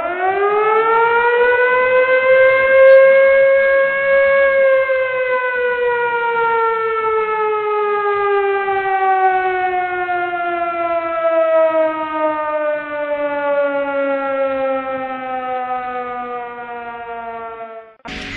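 A siren that winds up in pitch over about four seconds, then slowly winds down, falling steadily, and stops suddenly at the end.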